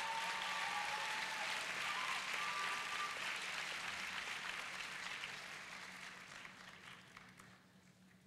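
Audience applauding, steady at first and dying away over the last few seconds.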